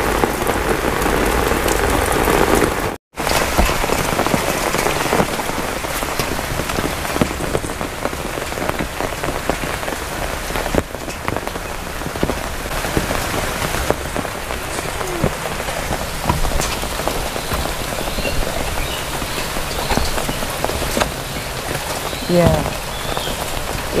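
Heavy downpour of tropical rain, a steady hiss of rain falling on wet ground and surfaces with scattered individual drops. It cuts out for a moment about three seconds in.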